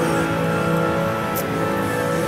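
Game music from a coin-pusher arcade machine's speakers, held melodic notes over a low sustained tone, with a brief high tick a little after halfway through.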